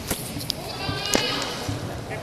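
A kendo fencer's high, wavering kiai shout about a second in, with a few sharp clicks around it.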